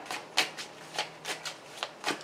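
A deck of tarot cards being shuffled by hand: a soft rustle of cards sliding against each other, broken by several short, sharp slaps at irregular moments.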